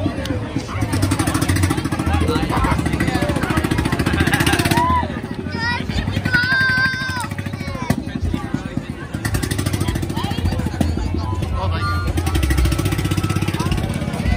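A vehicle engine running with a rapid, rough pulse as parade vehicles pass close by. It eases off for a few seconds in the middle and picks up again about nine seconds in, over crowd chatter.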